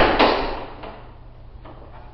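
A sharp knock at the very start, followed by a rustling hiss that fades over about half a second, then quiet, steady room tone.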